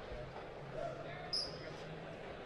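Faint, indistinct murmur of voices in a large hall, with one brief sharp click about a second and a half in.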